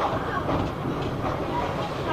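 Steady running rumble of a BR Mark 1 passenger coach moving along the track, heard from inside the carriage.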